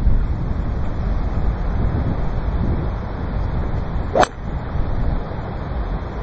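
Wind buffeting the microphone throughout. About four seconds in comes a single sharp crack: a TaylorMade Burner Superfast 2.0 fairway wood striking a golf ball off the fairway.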